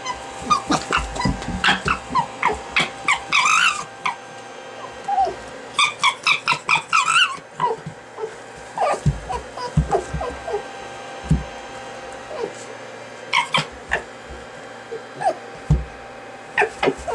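Red fox giving short, high whining yips in quick runs while playing at tug with a rope toy, with a few low thumps from the tussle.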